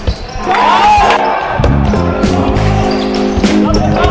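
Basketball game sounds under background music with a beat: a ball bouncing on the wooden court several times and sneakers squeaking in short high glides, clearest about half a second to a second in.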